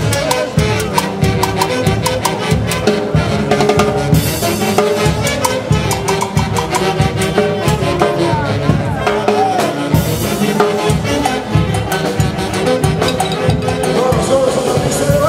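Live festival band of saxophones, brass and drums playing a lively dance tune with a steady, driving beat.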